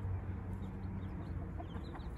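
Young chicks peeping in many short, high, falling calls while a mother hen clucks low among them, over a steady low hum.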